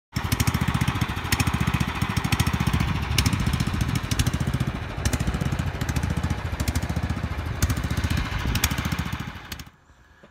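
Lawn mower engine running steadily close by, with a fast, even low pulse and a few sharp clicks over it. The sound cuts off abruptly near the end.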